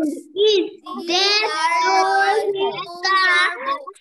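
Children's voices reading English sentences aloud in a drawn-out, sing-song chant, heard through a video call.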